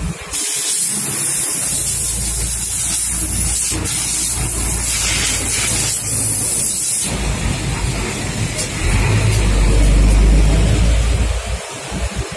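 Compressed-air blow gun hissing steadily for about seven seconds as a part is blown clean. It cuts off abruptly, followed by a low rumble that grows louder near the end.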